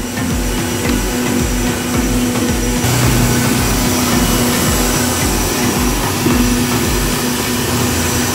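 Electric mixer grinder running steadily, blending an Oreo milkshake of milk, Oreo biscuits and sugar in its jar. The motor's hum gets a little louder about three seconds in.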